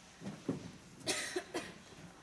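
A single cough about a second in, among scattered light knocks in a quiet room.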